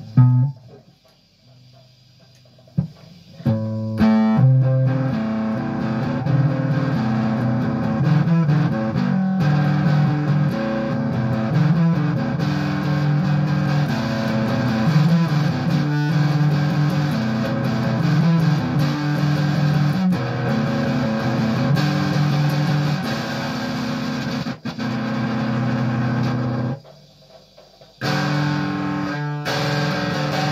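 Electric guitar being played in a loose jam, coming in after a pause of about three seconds and breaking off for about a second near the end before carrying on.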